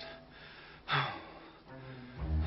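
A man takes one short, sharp breath about a second in, over faint sustained background music.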